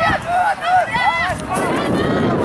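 Voices shouting short, repeated calls across the field, with no clear words. From about one and a half seconds in, a low rumble of wind on the microphone takes over.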